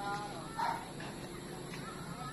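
A dog: a short, high call with a falling pitch at the start, then one louder bark just over half a second in.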